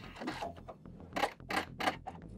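Three short mechanical clicks from a sewing machine in the second half, as the thread is cut at the end of a backstitched seam, over a faint low hum.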